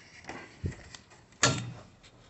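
Handling noises: a dull thump about two-thirds of a second in and a sharper knock about a second and a half in, with faint rustling between.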